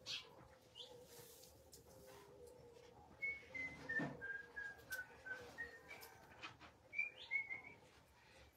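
Faint bird song in the background: a run of short whistled notes stepping down in pitch over a couple of seconds, then a few more notes near the end, over a faint steady hum.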